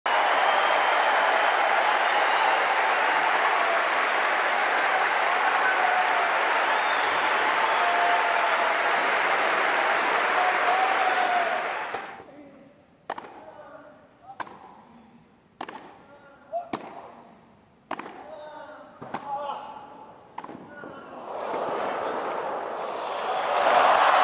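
Crowd cheering and applauding for about twelve seconds. Then it falls quiet for a tennis rally of about seven sharp racket-on-ball strikes, roughly one a second. The crowd noise swells up again near the end as the point ends.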